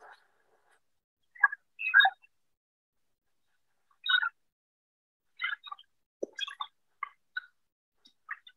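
Audio of a sound-installation video built from archival radio recordings, played back over a video call. It starts with static and comes through as about ten short, scattered snatches, with dead silence between them.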